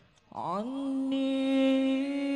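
A man's solo voice singing a sholawat chant: after a near-silent pause, about a third of a second in, he slides up and settles on one long held note, unaccompanied.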